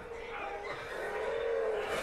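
Faint, low soundtrack of a TV drama's battle scene: muffled distant shouting and ambience, growing slightly louder.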